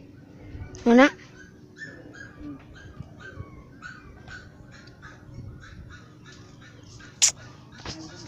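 A single short animal call about a second in, sweeping sharply up in pitch and the loudest sound here, over faint short chirps repeating every few tenths of a second. Near the end comes one sharp, very short knock.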